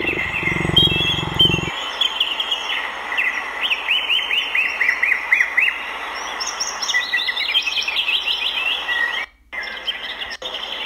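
Cheetah purring for about the first second and a half. Then songbirds chirp in quick repeated notes through most of the rest, with a short break near the end.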